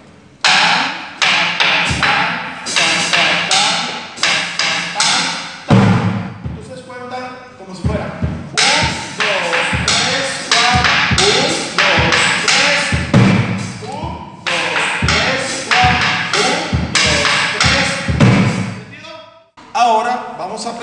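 Colombian tambora drum played with two wooden sticks in a basic cumbia pattern. Sharp clacking strikes on the wooden shell (paliteo) mix with deeper thumps on the drumhead, repeated throughout.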